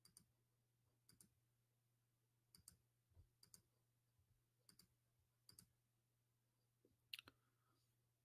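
Faint computer mouse clicks, several in quick pairs, about one every second, over a faint steady low hum.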